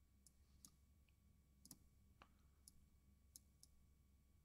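Near silence with several faint, irregularly spaced clicks of a computer mouse.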